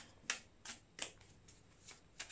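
A deck of tarot cards handled in the hands, the cards sliding against each other with a few crisp snaps, about four in two seconds.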